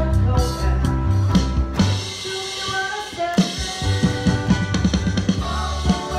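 Live band with drum kit, bass, keyboard and male lead vocal playing a pop song. The bass thins out about two seconds in, then the drums play a fill of quick, even strokes before the full band comes back in.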